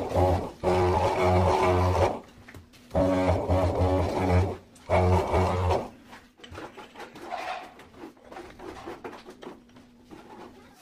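Handheld electric tile vibrator buzzing against a ceramic wall tile in four short runs of about a second each, pressing the tile into its bed of adhesive. The last run stops about six seconds in, followed by fainter handling sounds.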